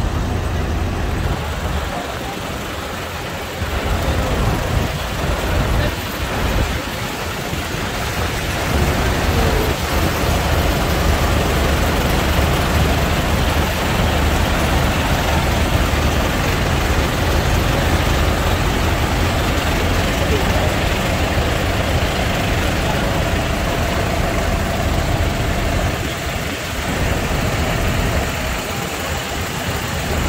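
Several farm tractors' diesel engines idling close by, a steady low rumble with a bit of noise, over the general hubbub of people.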